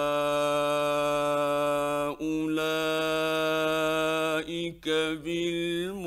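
A male reciter chanting the Quran in the ornamented mujawwad style. He holds one long note for about two seconds, then a second long note, then moves into shorter melismatic turns that glide up and down in pitch. It is heard through an old 1960s radio recording, dull in the treble.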